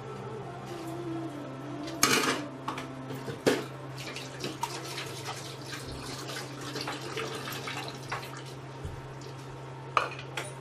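Kitchen clatter: scattered small clinks and ticks over a steady low hum, with two louder sharp knocks about two and three and a half seconds in. It may include water running at a sink.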